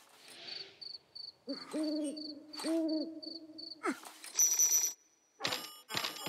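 Night-time cartoon sound effects: an owl hooting in two drawn-out calls over a soft, high chirp repeating about three times a second. In the last two seconds come a few short, bright ringing hits.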